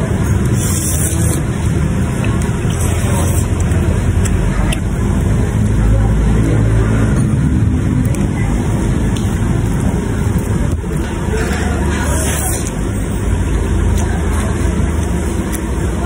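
Steady low background rumble with indistinct voices, and a few brief hissy sounds about one, three and twelve seconds in.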